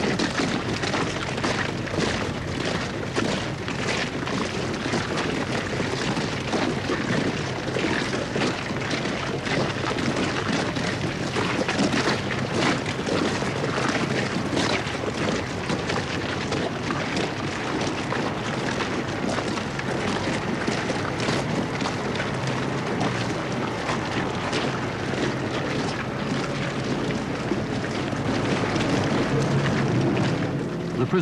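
Location sound of a crowd of men walking outdoors: a steady rumble of wind on the microphone with many irregular footfalls and rustles of heavy clothing and bags.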